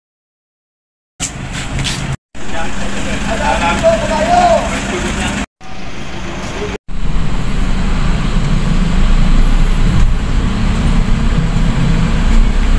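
Vehicle engine and road noise heard from inside the cabin: a steady low rumble that sets in about seven seconds in. Before that come a silent first second and a few short, choppy cuts of outdoor sound.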